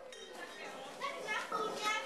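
Several children's voices at once, high-pitched shouts and chatter overlapping in a room, getting louder in the second half.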